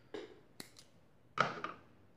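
Scissors snipping crochet yarn to cut it off at the finish of the edging: a few short, sharp snips in two small clusters.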